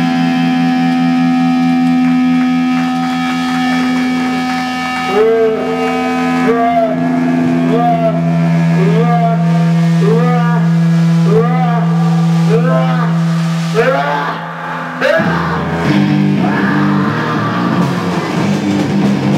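Live rock band: held, droning guitar notes, then over a dozen short wailing pitch swoops, each rising and falling, about every 0.7 s over a sustained low note. About 15 s in the held note cuts off and a choppier, busier passage starts.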